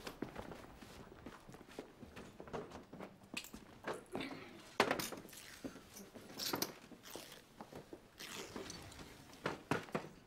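Footsteps and wooden café chairs being pulled out and set down on a stone pavement: scattered knocks and short scrapes, the loudest a sharp knock about five seconds in.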